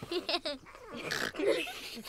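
Children stifling giggles and whispering: short squeaky snickers and breathy hisses.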